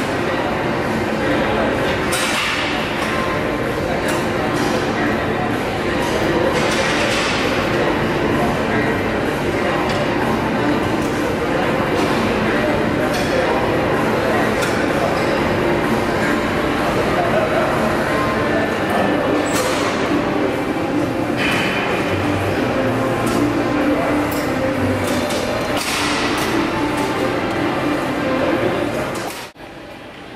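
Busy gym ambience: a steady murmur of other people's voices with occasional sharp clinks of metal weights and machine parts. The sound drops away abruptly just before the end.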